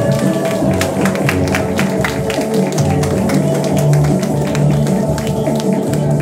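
Music with long held notes, over which irregular handclaps sound throughout.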